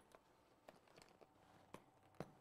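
Near silence, with a few faint clicks from hands handling the top of a canvas travel bag.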